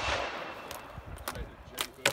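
Gunshots from elsewhere on a shooting range. One shot at the start echoes away over about a second, followed by three short, sharp cracks.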